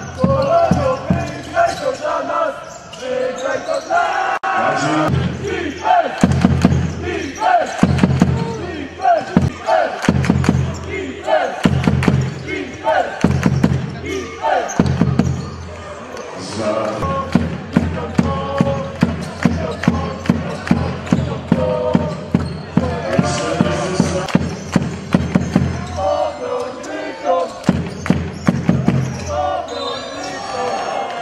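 A basketball being dribbled and bounced on a hardwood gym floor, sharp knocks coming again and again, with shoes on the court and indistinct shouting from players and spectators in a large echoing hall.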